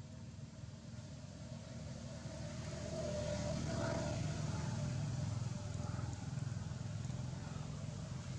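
A motor vehicle's engine rumble swells to its loudest about three to five seconds in, then eases off slightly: a vehicle going by.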